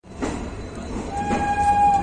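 Train rumbling, with a train horn sounding one held note about a second in.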